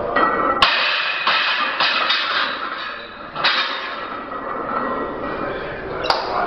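Loaded barbell, about 180 kg, set back into the steel squat rack after a heavy squat, with a sudden metal clank about half a second in, over a loud steady background din.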